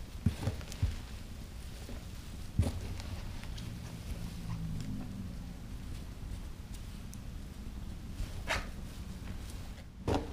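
A gloved hand digging and pushing damp vermicompost around in a plastic bin, soft rustling with a few light knocks against the tub: several in the first second, one about two and a half seconds in and one near the end.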